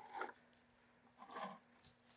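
Near silence with faint handling noises: the airless sprayer's plastic suction and drain tubes and a paint bucket being moved, with a short soft scrape about a second and a half in.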